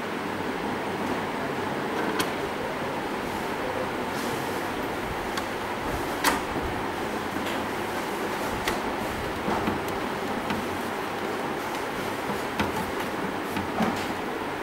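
Steady background room noise, a continuous hum and hiss, with scattered light clicks and knocks, the loudest about six seconds in.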